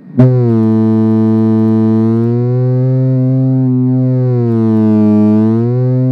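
LM386 audio amplifier oscillating through a small loudspeaker with the volume control turned up: a loud, low, buzzy tone that starts abruptly and holds steady, its pitch sagging slightly twice. The oscillation is the sign of the amplifier circuit's instability.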